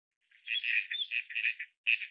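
Bird calls: a quick run of high chirps lasting over a second, then one more chirp near the end.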